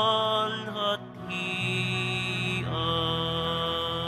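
Offertory hymn music at Mass: long held notes, changing to new notes about a second in and again near three seconds.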